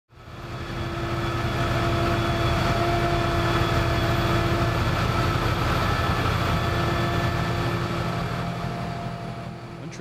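Wheel loader with a front-mounted Larue snowblower running steadily, its diesel engine and spinning blower drum chewing through a snowbank and casting snow into a dump truck alongside. The din fades in over the first second and eases slightly near the end.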